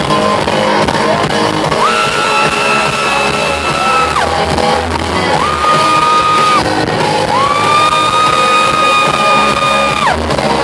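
Live rock band playing, with electric guitar and drums, heard from the crowd. Three long held notes slide up in pitch and hold, about two, five and seven seconds in.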